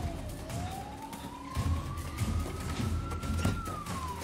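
Police siren wailing: one slow rising wail that peaks near the end and begins to fall, over a low rumble.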